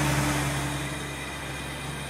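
Four-wheel-drive SUV engine running steadily under load as the vehicle works through deep mud, a little louder at first and then easing slightly.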